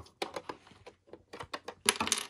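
Small plastic key clicking and tapping in the lock of a plastic toy locker door as the door is unlocked and opened: a string of light, irregular clicks, more closely bunched near the end.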